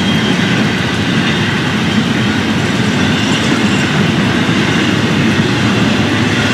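Florida East Coast Railway double-stack intermodal well cars rolling past at speed: a steady, unbroken rumble of steel wheels on rail.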